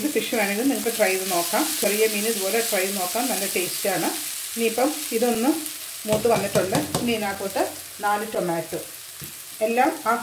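Chopped onions sizzling in a non-stick frying pan as a spatula stirs them, with a run of scraping strokes against the pan about six seconds in.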